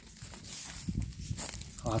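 Footsteps and rustling through dry reed stalks, over a low irregular rumble on the phone's microphone; a man starts speaking at the very end.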